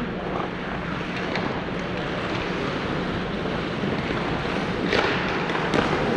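Ice skates scraping on rink ice over a steady low hum, with a louder, longer skate scrape about five seconds in.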